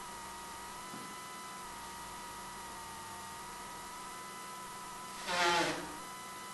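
Steady electrical hum with a thin, even whine. About five seconds in, a brief pitched sound rises above it for under a second.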